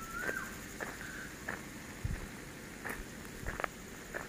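Faint outdoor ambience: a short whistled bird call near the start, then scattered short chirps or light steps on dry ground and a few low thumps, like the camera being carried.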